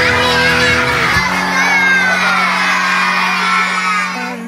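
A crowd of young children shouting together in one long, drawn-out call that slowly falls in pitch, over soft background music.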